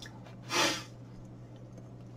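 One short exhaled breath about half a second in, over a faint steady low hum.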